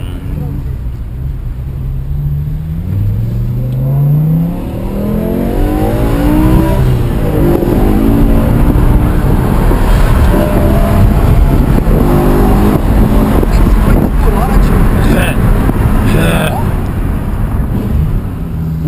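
BMW M6's naturally aspirated 5.0-litre V10 accelerating hard under full throttle, heard from inside the cabin. Its pitch climbs, drops once about four seconds in, and climbs again, then the engine stays loud and high with heavy road noise until near the end.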